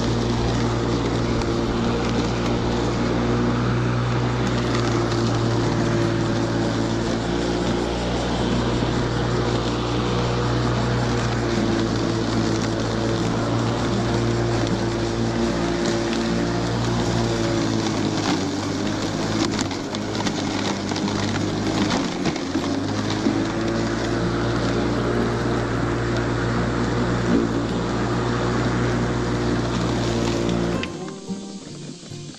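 Cordless electric lawn mower's motor and spinning blade running with a steady hum while cutting grass. The pitch sags for a few seconds a little past halfway, as it works through thicker grass.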